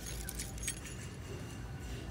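Light rustling and small clinks of Christmas ornaments and their tags being handled in a wire display bin, over a low steady background hum.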